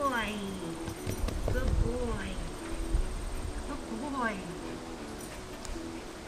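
A voice giving short calls that rise and fall in pitch, about every two seconds, over a low rumble and knocks.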